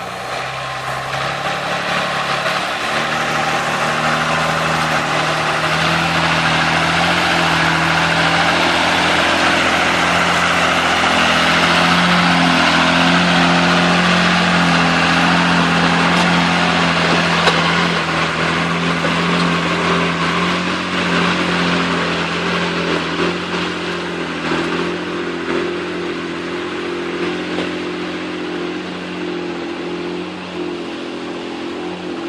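Engine of a lifted Jeep Cherokee off-road build on oversized mud tyres, held at steady revs as it drives through icy water and mud, with a rushing wash of water and tyres. It is loudest in the middle as it passes close, then fades as it drives away.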